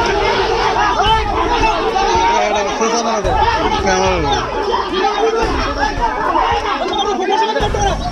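A crowd of men all talking at once, many voices overlapping into a continuous babble.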